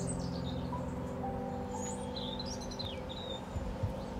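A few birds chirping in short gliding calls, mostly in the middle, over quiet background music of steady held chords.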